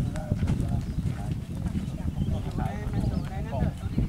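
People talking among themselves in short, casual remarks, over a steady low rumble.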